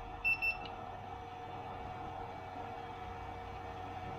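Handheld infrared thermometer giving two short high beeps as its trigger is pulled to take a reading. Underneath, the steady hum of the water-cooling pump and bench power supply running.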